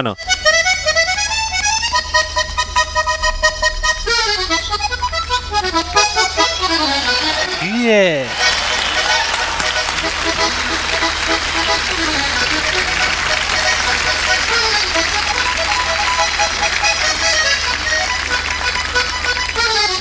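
Button accordion playing a fast cueca melody. About eight seconds in, an audience's applause and cheering joins and runs over the accordion to the end.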